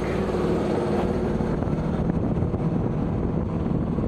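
A sailing yacht's inboard engine drones steadily while the boat motors under way, with the rush of water around the hull.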